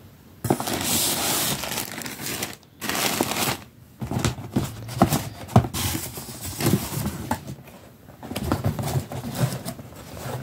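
Plastic packaging and a cardboard box being handled and pulled about: several bursts of crinkling and rustling, with sharp crackles and knocks in between.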